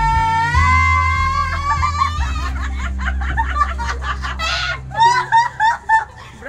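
Two girls singing a long held high note together through karaoke microphones over a backing track with a bass line, the note rising slightly about half a second in. The singing breaks up, and near the end they burst into loud laughter.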